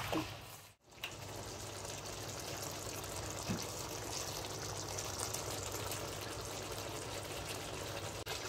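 Beef curry in a masala gravy sizzling steadily in a wok, with a short break about a second in.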